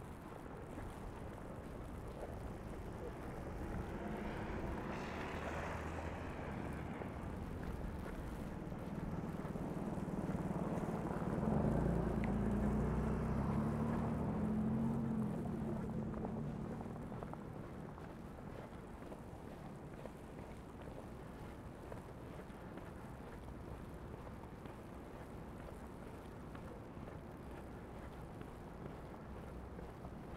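Vehicles passing on a snow-covered city street: tyre noise swells and fades about five seconds in, then a louder vehicle with a low engine hum passes around the middle and fades away, leaving a steady low city background.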